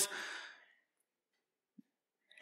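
A man's brief breathy exhale into a microphone, fading away within about half a second, then silence.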